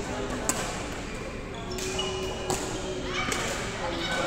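Badminton racket hitting a shuttlecock: a sharp crack about half a second in and a second one about two and a half seconds in, in a hall with voices in the background.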